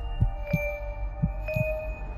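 Intro sound design: a low heartbeat-like double thump that comes twice, about a second apart, under steady ringing electronic tones.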